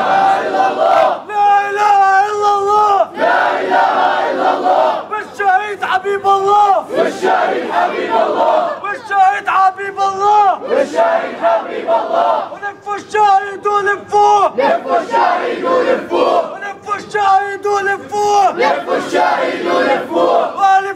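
A crowd of men shouting a chant together, in repeated phrases of a second or two of held, shouted notes with short breaks between them.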